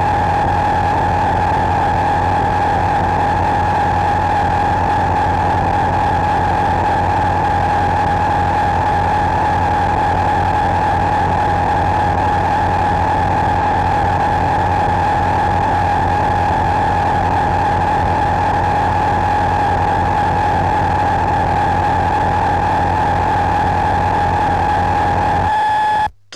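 Steady electronic drone: one high held tone over a low hum and hiss, unchanging throughout, cutting off suddenly at the very end.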